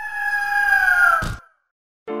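A bird's screech sound effect: one long, clear cry lasting just over a second and falling slightly in pitch, cut off by a short whoosh-like hit about a second and a quarter in.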